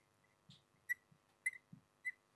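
Dry-erase marker squeaking on a whiteboard while a word is written: a few faint, short squeaks about half a second apart.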